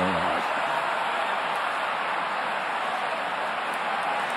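Steady noise of a large stadium crowd just after a penalty kick goes wide, with the tail of a commentator's long drawn-out shout fading out at the very start.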